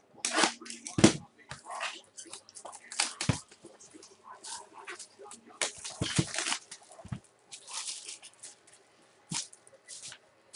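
Crinkling and rustling of a trading-card pack wrapper and the cards inside being handled and flipped through, in a run of short, irregular scratchy bursts.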